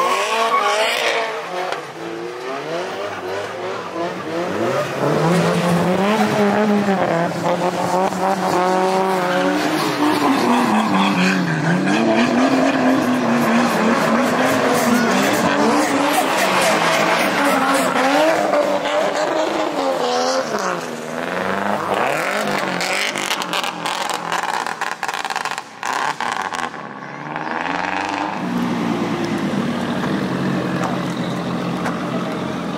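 Drift cars sliding through a tight bend one after another, engines revved hard with the pitch rising and falling as the throttle is worked, over tyre squeal and skidding.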